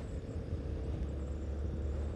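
Yamaha Ténéré 250's single-cylinder engine running steadily while riding, under a steady low rumble of wind and road noise on the bike-mounted camera's microphone.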